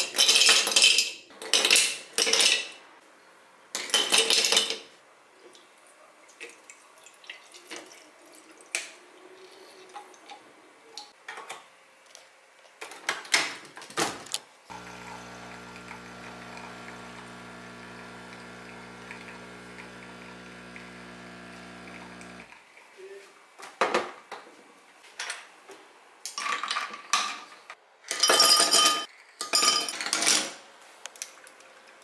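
Ice cubes clattering into a glass cup, then a capsule espresso machine's pump humming steadily for about eight seconds as the shot pours over the ice, then more ice clinking into a glass near the end.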